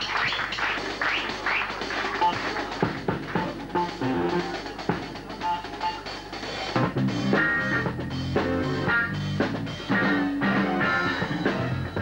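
A jazz band playing live, with drum kit and keyboards. The music grows fuller, with more low notes, about seven seconds in.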